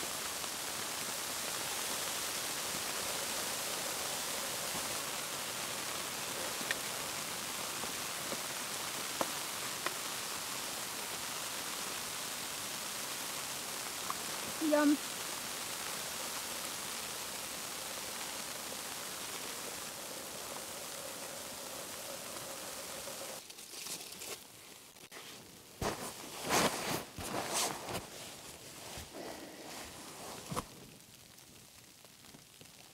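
Firemaple Star X1 gas canister stove burning, a steady hiss with a faint hum while it heats food. Near the end the hiss drops away, leaving quieter scattered knocks and crackles.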